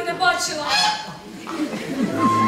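A loud vocal cry from a performer, about a second long and bending upward in pitch, just before the orchestra comes in.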